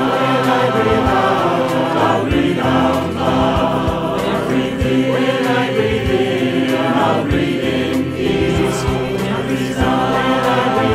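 A choir singing: many voices, each recorded separately at home and mixed together, holding notes that change every second or so.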